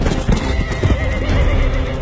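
A horse neighing, with hooves clopping.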